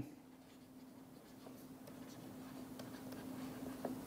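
Faint scratching and light ticks of a stylus writing by hand on a pen tablet or touchscreen, over a steady low electrical hum.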